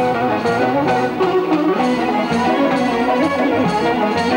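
Balaban, the Azerbaijani double-reed woodwind, playing a traditional melody over a steady beat of percussion strikes, about two or three a second.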